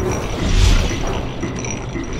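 Intro sound effects of heavy metal gears turning and ratcheting over a deep rumble that swells about half a second in.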